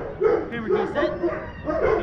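A young goldendoodle barking in a quick run of short barks, several to the second.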